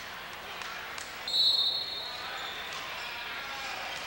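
Referee's whistle blown once about a second in, a single steady high tone held for over a second, signalling the volleyball serve, over the steady noise of a gym crowd.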